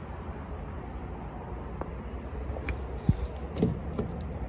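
Low steady outdoor rumble with a few faint clicks, and one sharp knock about three seconds in.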